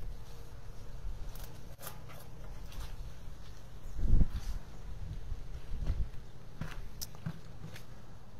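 Footsteps and the knocks of a plastic nursery pot being handled and set down on a wooden table, with a low thump about four seconds in as the loudest sound.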